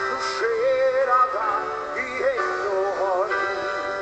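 Live band playing a slow song, with a man singing a wavering, held melody line over sustained keyboard and guitar chords.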